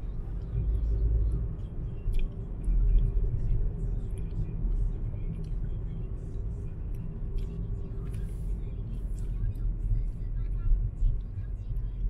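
Steady low rumble of a car driving along a road: engine and tyre noise.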